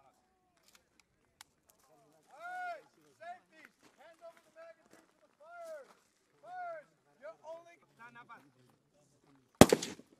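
A man's voice calling out in drawn, arching phrases for several seconds. About half a second before the end comes a single loud shot from an AK-pattern rifle.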